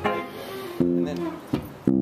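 Guitar picking a few plucked notes in a loose jam. Each note starts sharply and rings, then fades, with three new notes in the second half.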